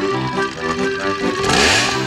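Background music with held organ-like notes, and near the end a short burst of a chainsaw revving, its pitch swooping and rising.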